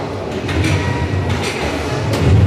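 Busy darts-tournament hall ambience: a steady low rumble of the crowded venue with a few faint clicks scattered through it.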